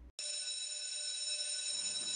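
School class bell ringing with a steady, high ringing tone that starts abruptly just after a brief dropout and keeps going: the bell that signals the end of class.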